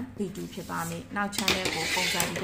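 A woman talking, with a pen scratching on paper as a label is written, and a rough rubbing hiss in the last half second.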